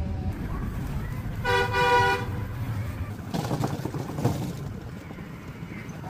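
A vehicle horn sounds once: one steady toot of under a second, about a second and a half in, over a steady low rumble. A burst of clattering follows around three to four seconds in.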